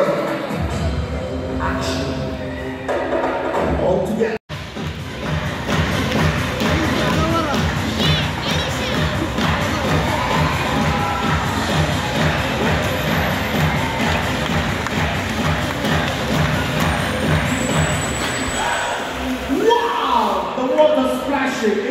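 Show music with a steady beat over an audience cheering and shouting, with scattered voices. The sound drops out for an instant about four seconds in.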